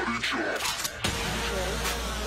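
A break in a bass-heavy electronic song: the low bass drops out for about a second while mechanical clicks and creaks and a short voice sample play. The steady bass and a held tone come back in about a second in.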